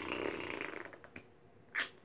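A person's long breathy exhale with a slight rasp, fading out over about a second, then a faint click and a short hiss of breath near the end.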